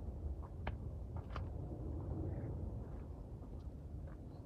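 Quiet, steady low rumble of outdoor background noise, with a few faint clicks in the first second and a half.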